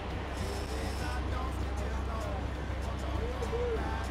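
Steady low rumble with wind-and-water hiss on an offshore fishing boat, with faint crew voices now and then.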